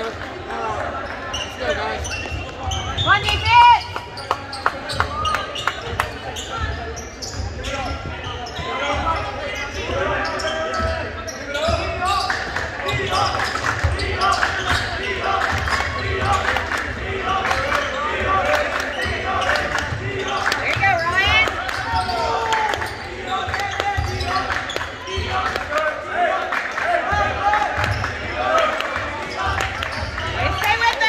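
A basketball bouncing on a hardwood gym floor during play, amid the voices of spectators and players, echoing in a large gym. A sharp knock about three and a half seconds in is the loudest moment.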